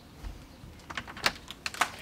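Door latch and handle clicking as a glass-panelled door is opened: a quick run of sharp clicks and taps in the second half.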